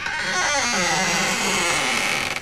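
A title-card sound effect: a wavering tone that bends downward under a loud, hissing wash.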